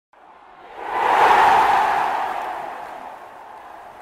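An intro whoosh sound effect: a single rush of noise that swells up in about half a second and then fades away slowly over the next two seconds.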